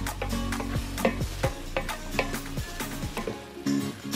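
A wooden spoon stirs pork chunks and onion sautéing in a stainless steel pot: sizzling, with irregular scrapes and knocks against the pot, under background music.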